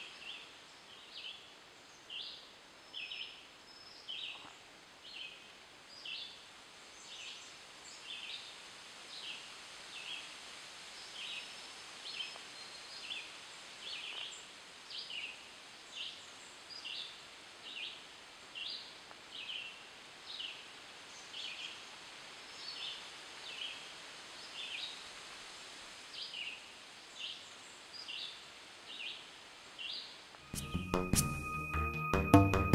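A small animal's high, short chirp repeated over and over at an even pace, about three chirps every two seconds, over a faint outdoor hiss.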